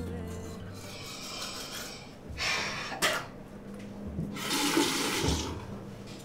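Water from a bathroom sink tap, heard in two short bursts of hiss, the second longer, with a sharp click between them.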